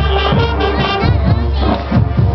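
High school marching band playing in the stands: clarinets, flutes, brass and sousaphones over a steady beat of low drum hits, with crowd voices mixed in.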